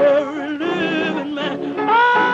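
Gospel singing: a woman's voice drawing out long held notes that waver and slide between pitches, with no clear words, over sustained backing.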